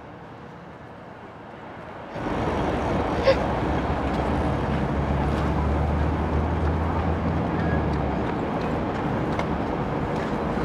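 Outdoor street background with traffic noise cutting in abruptly about two seconds in. A low engine rumble swells for a few seconds in the middle, and a single sharp click comes shortly after the noise begins.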